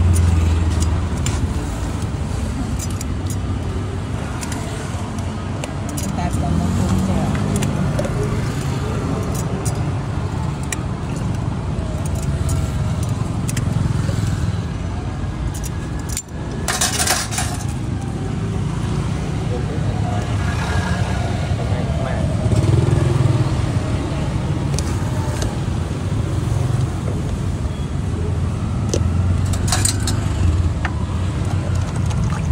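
Steady low rumble of road traffic with voices in the background, and light metallic clicks from a hand-held lime squeezer being worked. A brief rush of noise about seventeen seconds in.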